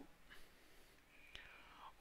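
Near silence: faint room tone with a single soft click a little past halfway.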